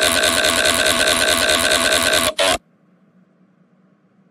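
Synthesized text-to-speech voice reading out a long row of A's as a scream: a very loud, rapid, stuttering 'ah-ah-ah' that repeats about eight times a second. It cuts off suddenly a little past two seconds in, after one last short burst, and only faint hum is left.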